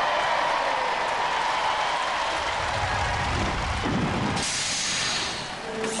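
Large studio audience cheering and applauding, a continuous noisy crowd sound that brightens for about a second around four and a half seconds in.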